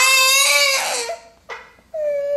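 A baby's high-pitched squeal, held for about a second, followed by a shorter falling squeal near the end.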